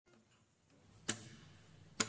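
Two faint clicks about a second apart, each followed by a short ringing tail.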